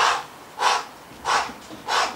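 Four sharp, forceful exhales, about two-thirds of a second apart: an exerciser breathing hard in rhythm with repeated jumping squats.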